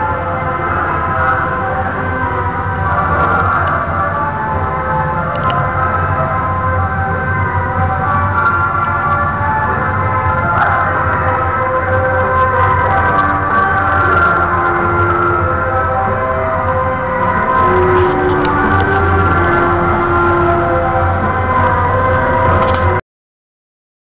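Music played loud over a float's loudspeaker sound system, full of long held notes over a steady low hum; it stops abruptly about a second before the end.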